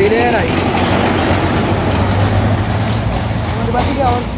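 A vehicle engine running steadily, a low hum under a dense hubbub of crowd noise. A voice with a wavering pitch trails off at the start and comes back near the end.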